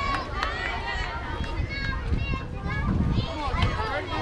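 Several voices talking and calling out across the field, over a steady low rumble that swells about three seconds in.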